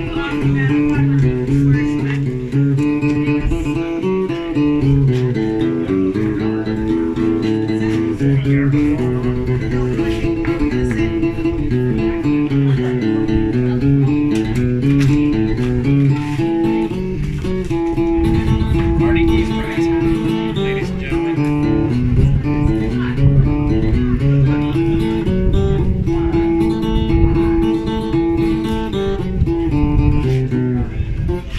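Acoustic guitar picking a tune, a melody stepping up and down over a steady bass line.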